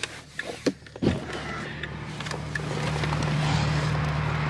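A car door thumps about a second in as the driver gets out. It is followed by the steady low hum of an idling car engine.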